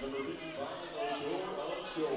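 Basketball gym ambience during a free-throw setup: a basketball bouncing on the hardwood court under a low murmur of indistinct voices echoing in the hall.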